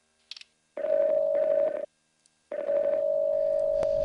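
Skype outgoing-call ringback tone: a steady ringing tone sounds twice, once for about a second and again from about two and a half seconds in, while the call waits to be answered. Two faint clicks come just before the first ring.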